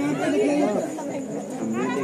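Crowd chatter: several people talking over one another.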